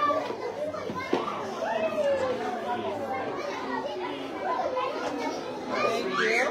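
Young children's voices chattering and calling out at once, an overlapping babble of small voices.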